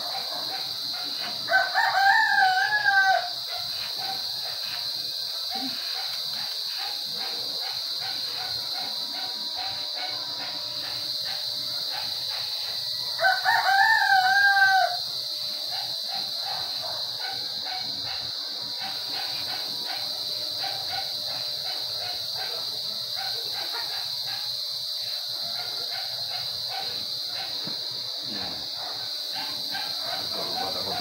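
A rooster crowing twice, each crow about a second and a half long, the second about eleven seconds after the first, over a steady high-pitched hum.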